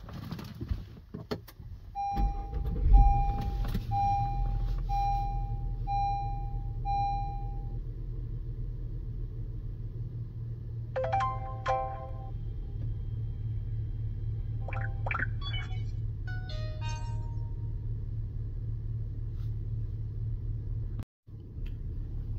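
A car engine starts and settles into a steady idle while the car's chime sounds six times, evenly spaced. About eleven seconds in, the Lingdu LD02 dash cam powers up with a short rising startup jingle, followed a few seconds later by a few more electronic tones.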